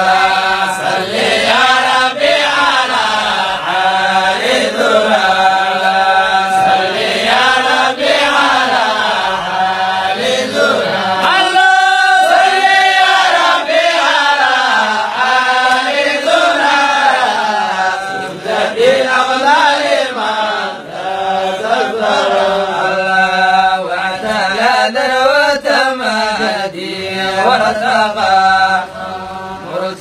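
A young man's solo voice chanting melodically into a microphone, in long drawn-out phrases that rise and fall, with a high, ornamented run about halfway through. A steady low hum sits beneath the voice.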